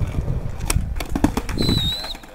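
Skateboard wheels rolling on concrete, with sharp wooden clacks as the board is popped and hits the ground during a nollie heelflip attempt. A short, steady high whistling tone near the end.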